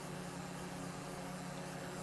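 Steady low hum of the Haas TM-1p CNC mill while its table is jogged along the X axis, with no clicks or knocks.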